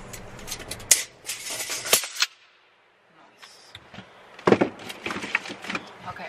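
Tape measure being reeled in and handled, clicking and rattling in two stretches, about a second in and again about four and a half seconds in.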